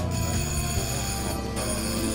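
A bell ringing continuously in a steady metallic peal, rung to mark racing pigeons arriving at the loft.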